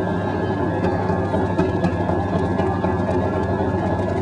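Whipped-cream machine running as it pipes cream onto a strawberry sundae: a steady motor hum with a faint high whine above it.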